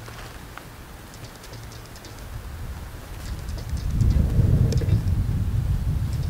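Wind buffeting the microphone: a low, noisy rumble that builds about halfway through and is loudest near the end.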